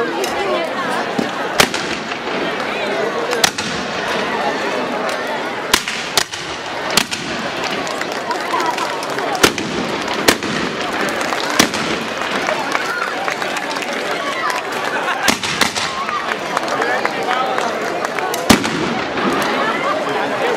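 Shotguns fired at a burning rag-doll effigy: about a dozen sharp bangs at irregular intervals, one to two seconds apart, over the steady chatter of a large crowd.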